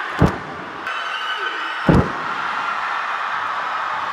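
Two heavy thuds of wrestlers' bodies hitting the canvas of a wrestling ring, about a second and a half apart, over steady arena crowd noise.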